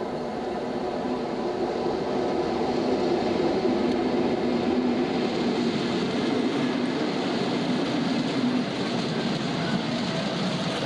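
Class 60 diesel locomotive passing close at speed with a long train of hopper wagons. The engine's steady drone dies away about eight seconds in, while the wagon wheels keep up a continuous rumble on the rails.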